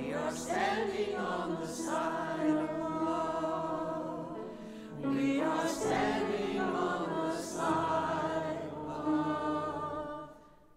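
Small mixed choir singing with grand piano accompaniment. The voices hold long phrases, ease off briefly and take up a new phrase about halfway through.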